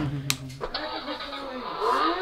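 A battery-operated kids' ride-on toy motorbike's built-in speaker plays a recorded engine-starting sound after its dashboard button is pressed. The tinny engine sound comes in under a second in and starts to rev near the end.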